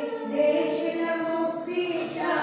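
A group of voices singing a devotional aarti hymn together, with long held notes.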